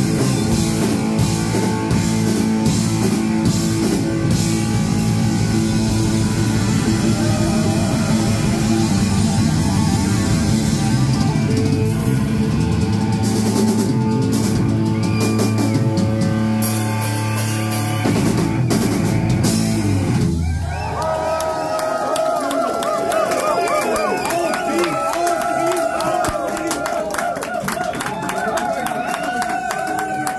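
A live cowpunk rock band plays loud on electric guitars, bass, drums and shouted vocals. The song stops abruptly about twenty seconds in, giving way to crowd cheering and shouting over a lingering steady tone.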